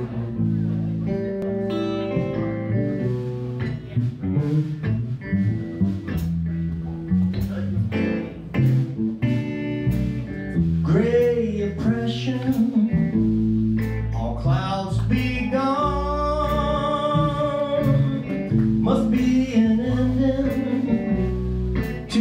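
Live blues band playing in a small room: electric guitar over bass guitar and a drum kit, the drums keeping a steady beat.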